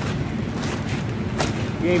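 Steady fan hiss of a laminar flow hood, with a grain-filled plastic spawn bag being squeezed and shaken to break up the grain. There is one sharp crackle about one and a half seconds in.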